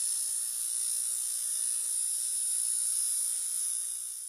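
Steady, high-pitched electronic hiss like static, with a faint low hum beneath. It is a sound effect for the logo animation; it starts abruptly and begins to fade near the end.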